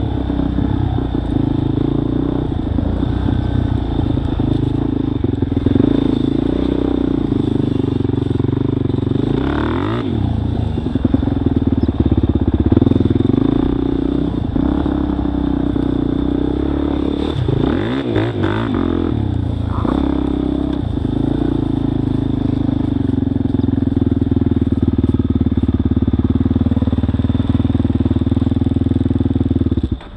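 Dirt bike engine running as the bike is ridden along a rough grassy trail, the revs swooping up and down with the throttle around a third of the way in and again a little past halfway, then holding steady.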